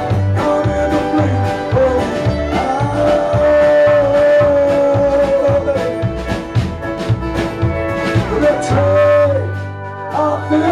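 Live folk-rock band playing a stretch of the song without lyrics: acoustic guitar, upright bass and drums keep a steady beat while fiddle and pedal steel play long held notes, with a downward slide a little after eight seconds.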